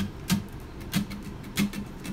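Acoustic guitar strummed in single strokes, about five of them spaced roughly half a second apart, each one ringing briefly.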